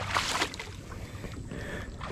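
Shallow muddy water splashing as someone wades through it, with one louder splash right at the start, over a low rumble of wind on the microphone.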